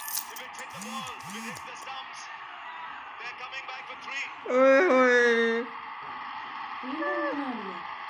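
Human voices: a few short sounds about a second in, a loud drawn-out call about four and a half seconds in, and a shorter call near the end, over a faint steady background noise.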